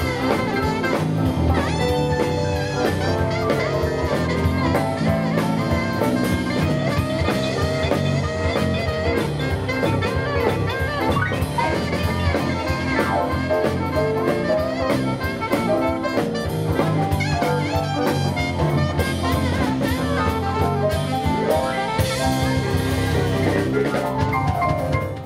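A live band playing: saxophone over electric guitar, bass guitar, keyboards and a drum kit keeping a steady beat.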